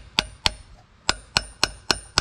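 Hammer striking a seal installer tool, driving a new wheel seal into a truck's brake drum hub: six sharp metallic taps with a brief ring, in pairs about a quarter second apart with a pause between pairs.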